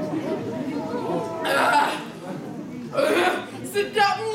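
Voices from a stage performance: a low murmur of overlapping voices, then two loud, breathy vocal outbursts, one about a second and a half in and one about three seconds in.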